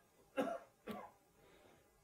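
Two short coughs, about half a second apart.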